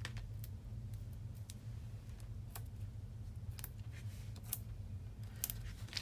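Sparse faint clicks and taps, about one a second, as foam adhesive dimensionals are peeled off their backing sheet and pressed onto the back of a cardstock panel, over a low steady hum.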